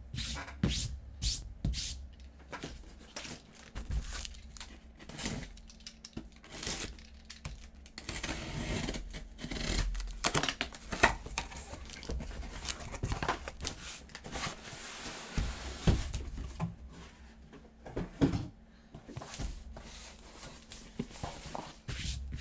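A cardboard shipping case being opened and unpacked: tearing, scraping and crinkling of cardboard, with a longer stretch of tearing about eight to eleven seconds in. Short knocks and thumps as the box and its inner boxes are handled and set down on the table.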